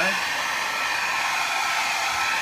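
Mini hair dryer running steadily on its low setting, a continuous even hum of blowing air.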